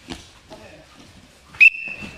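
A sports whistle blown once: a short, loud, steady blast about one and a half seconds in, in a wrestling practice hall. Faint knocks of feet on the mat come before it.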